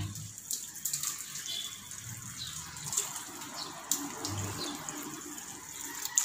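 Tap water running and splashing into a stainless-steel sink as hands are rinsed under the stream, with a few light knocks.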